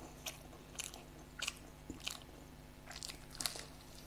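A person chewing and biting a samosa: its crisp fried pastry crunching in about six short, irregular bursts. The loudest crunch comes a little past three seconds in.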